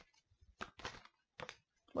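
A deck of tarot cards being shuffled by hand: a few soft, separate card clicks and flicks, then near the end several cards slipping out of the deck onto the cloth-covered table.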